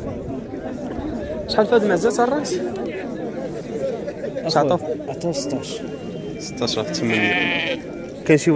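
Steady crowd chatter, with one bleat from the penned livestock, about a second long, near the end.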